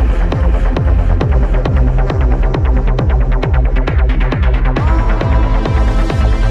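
Techno track: a steady four-on-the-floor kick drum, about two beats a second, under a throbbing bass. Dense ticking percussion fills the middle, and the bright top drops out shortly before the end.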